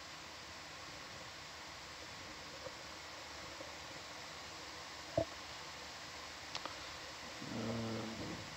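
Steady low hiss of the ROV control-room audio feed, with a brief murmured "um" about five seconds in, two faint clicks a little later, and a short low hum near the end.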